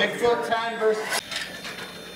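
People talking, with no distinct truck sound standing out; the sound breaks off abruptly a little past halfway through.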